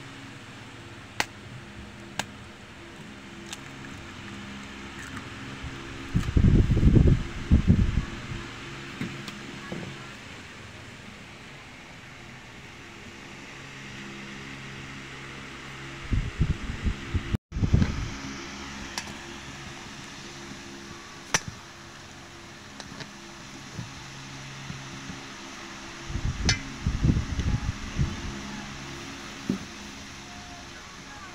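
A steady motor hum, like a running fan, with three spells of low thumps and knocks about six, sixteen and twenty-six seconds in, and a few sharp clicks.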